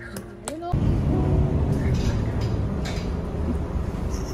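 Background music briefly, then from about a second in the low rumble of a bus's engine and road noise heard from inside the moving bus, with occasional rattles and clicks.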